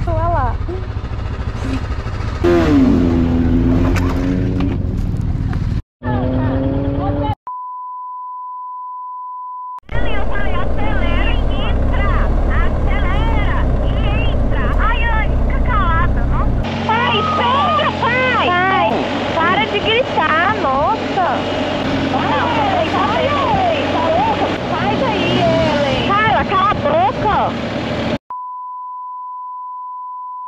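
Motorcycle riding noise, a low engine and wind rumble, with voices over it, broken twice by a steady high beep tone of about two seconds each: once near the middle of the first third and once near the end.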